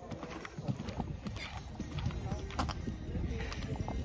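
Hoofbeats of a horse cantering on sand arena footing: a run of dull thuds.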